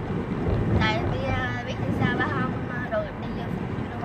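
Steady low road and engine rumble inside a moving car's cabin, with voices talking over it in short phrases.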